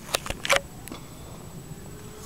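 A few short, sharp rustles and crackles in the first half-second as a hand snatches up dry grass from the ground to stuff into a beekeeper's smoker.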